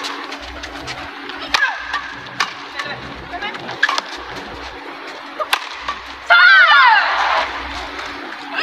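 Badminton rally: sharp racket strikes on the shuttlecock about every one to one and a half seconds, with court-shoe squeaks. A little over six seconds in, the point ends with a loud, high cry falling in pitch, over crowd noise.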